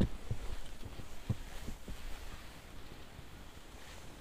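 Skis sliding over rutted, lumpy snow, with faint wind on the camera microphone and several low knocks, the loudest right at the start.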